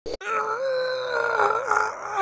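A long, slightly wavering vocal wail held on one note, after a brief sound and a short break at the very start.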